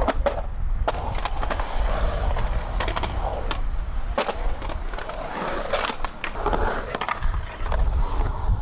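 Skateboard wheels rolling on a concrete bowl with a continuous low rumble, broken by several sharp clacks of the board hitting the concrete and coping.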